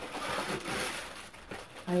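Rustling of a cardboard shoebox and its packing as the lid is opened, for about a second and a half before dying down.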